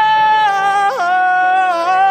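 A pop ballad: a singer holds a long sung "oh". The note steps down about half a second in, flips up and back quickly about a second in, then settles on a lower held note over steady accompaniment.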